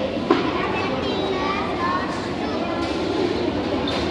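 Many children's voices chattering at once in a room, a steady hubbub of overlapping talk, with one sharp knock about a third of a second in.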